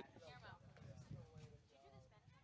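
Faint, distant calling voices from the soccer field, with wavering pitch: players and onlookers shouting.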